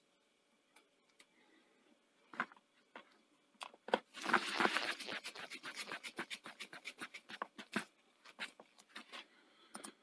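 Screwdriver driving a long screw into the sheet-metal case of a VCR power supply. A few separate clicks come first, then scraping and rubbing about four seconds in, then a quick run of small clicks as the screw turns, stopping about a second before the end.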